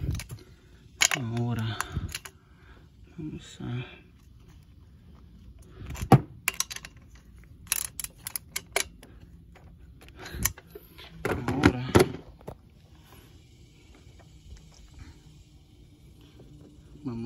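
Metal hand tools clicking and clinking as a socket, ratchet and extension are handled on intake manifold bolts: sharp single clicks, with a quick run of clicks about eight seconds in.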